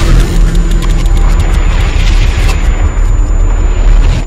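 Loud cinematic logo-intro sound effect: a sudden hit, then a dense rushing swell over a deep bass rumble.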